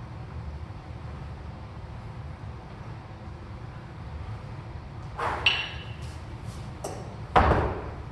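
A steady low hum, then about five seconds in a metallic clink with a brief ring as a pair of kettlebells come down from overhead, and a loud thud near the end as they are set down on the floor.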